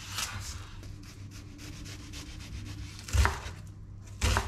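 Chef's knife cutting through an onion on a wooden cutting board: a soft scraping of the blade through the onion, then one loud knock of the knife on the board about three seconds in.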